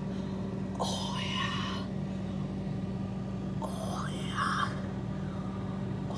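Two short breathy vocal sounds close to the microphone, about one second in and about four seconds in, over a steady low hum.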